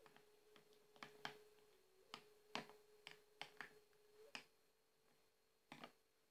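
A spoon clicking and tapping against a small ceramic bowl while stirring a cream mixture: light, irregular taps, a few each second, with a faint steady hum underneath.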